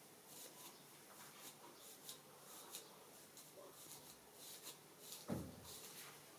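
Wide-tooth comb scratching through hair and along the scalp, faint quick strokes about two a second. A single low thump about five seconds in is the loudest sound.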